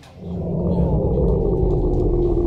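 A loud, low rumbling drone that swells in within the first half second and holds steady, with a faint tone gliding slowly downward.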